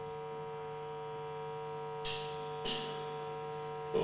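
Steady electrical mains hum from the stage amplification. There are two brief, soft hissy noises about two seconds and two and a half seconds in.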